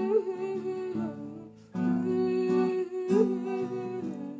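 A woman humming a wordless melody over strummed acoustic guitar chords, with a fresh strum just under two seconds in.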